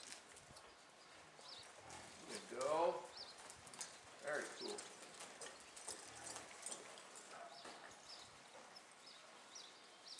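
Quarter horse walking on arena dirt, its hoofbeats faint. A short drawn-out call comes about three seconds in, with a weaker one a little later, and small high chirps are scattered throughout.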